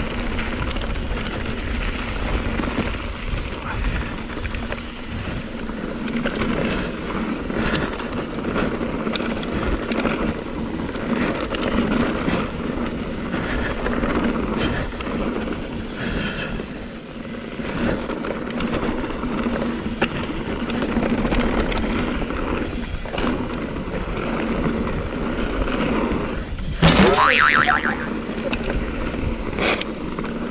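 Mountain bike riding down a rough trail: a steady rush of wind on the microphone and tyre noise, with rattles and knocks from the bike over bumpy ground, and a brief squeal that swoops in pitch near the end.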